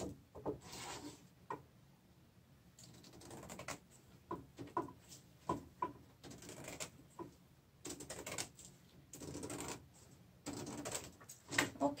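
Scissors snipping through stiff needlepoint canvas: an irregular string of short, crisp cuts, with the canvas sheet rustling as it is handled near the end.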